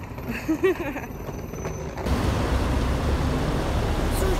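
A short laugh. About two seconds in, after a cut, steady street traffic noise takes over, with a strong low rumble.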